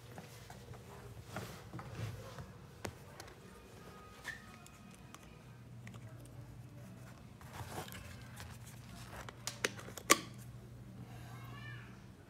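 Handling noise with several short clicks, the loudest a sharp snap about ten seconds in as the GoPro wall charger is pushed into a wall socket, over a low steady hum.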